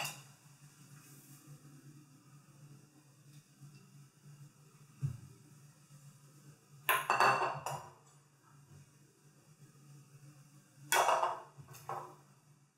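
Glass mixing bowl and plate handled on a granite countertop: a soft knock about five seconds in, then two brief, louder bursts of clinking, one mid-way and one near the end, over a steady low hum.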